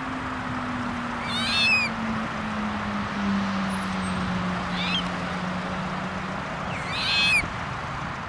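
Short, high-pitched bird calls from waterbirds, three times: about one and a half seconds in, a fainter one near five seconds, and again about seven seconds in. Under them run a steady background hiss and a low hum that slowly falls in pitch.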